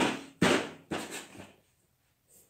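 Three sharp knocks about half a second apart, each with a short ring, as a toddler's hard plastic seat bumps on a tiled floor.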